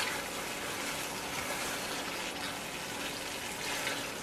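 Tomato purée and paste frying in oil in a pot: a steady, even sizzle.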